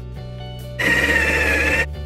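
Electric coffee machinery buzzing loudly for about a second, starting and stopping abruptly, over background music.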